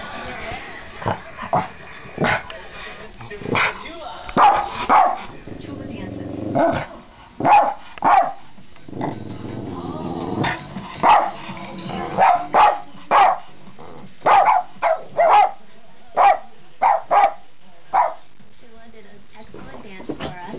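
Cavalier King Charles spaniel barking loudly and repeatedly in short, sharp barks that come in quick clusters, with a lower, longer growl between them, out of confusion and frustration at the television.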